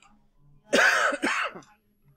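A person clearing their throat close to the microphone, a loud two-part rasp lasting under a second, about midway through.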